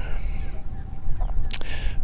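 Low, steady rumble of wind on the microphone, with a brief high hiss near the start and one sharp click about a second and a half in.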